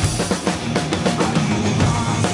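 Acoustic drum kit played hard along with a loud rock backing track: rapid drum and cymbal strikes over the recorded band.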